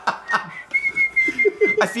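A man whistling a tune, a run of short high notes.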